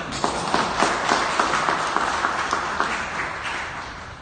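Audience applauding: many hands clapping at once in a dense patter that dies down near the end.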